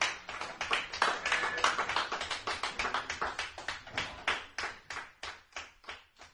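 Small audience applauding, the clapping thinning out and fading toward the end.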